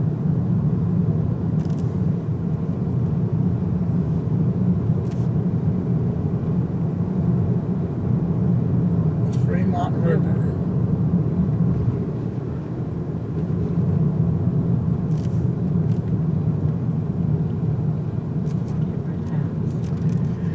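Steady low drone of a car's engine and tyres heard from inside the cabin while driving.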